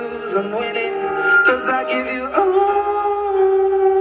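Live music: a man singing a slow, drawn-out melody into a microphone, ending in a long held note over the second half.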